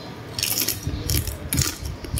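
Close-up chewing of cooked crab: shell cracking and crunching between the teeth, starting about half a second in as a run of sharp crackles.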